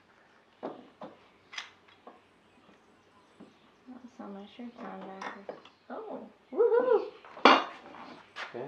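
Metal bar clamps clinking as they are set and tightened around a wooden box: a few scattered light metallic clicks and knocks, one ringing briefly, in the first couple of seconds.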